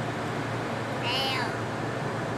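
A young child's high-pitched voice making one short, drawn-out sound that bends in pitch, about a second in, over the steady hum of road noise inside a car cabin.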